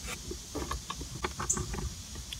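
Faint scattered clicks of a Phillips screwdriver backing out a sun-visor mounting screw from a car headliner, over a low background rumble.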